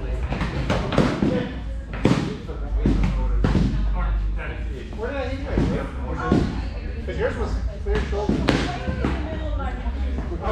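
Indistinct voices of several people talking across a large room, with sharp thuds and slaps about once a second from foam sparring weapons striking and feet on the floor mats.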